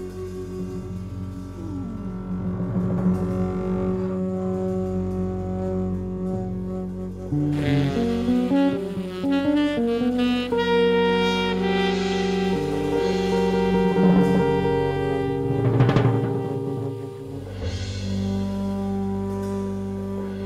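Small-group jazz playing, with saxophone and double bass among the instruments, on long held notes. The sound thickens and brightens about seven and a half seconds in as more lines come in.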